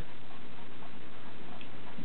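Steady hiss of background noise, even throughout, with no distinct sound event standing out.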